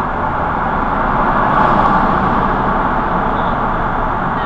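Steady road and tyre noise of a car driving through a road tunnel, heard from inside the car, swelling a little about two seconds in.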